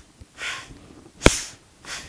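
A man's forceful breaths through the nose in a pranayama breathing exercise: three short hissing bursts about two-thirds of a second apart, with a sharp click, the loudest sound, just past a second in.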